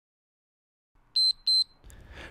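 Two short, high electronic beeps from an interval timer, about a third of a second apart after dead silence, marking the end of a timed exercise interval.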